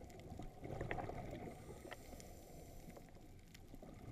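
Underwater sound heard through a submerged camera: a faint, steady, muffled water rumble with scattered light clicks, swelling briefly about a second in.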